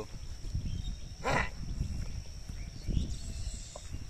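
A pair of bullocks pulling a wooden plough through dry, cloddy soil: a steady low rumble, with one short, breathy sound about a second in.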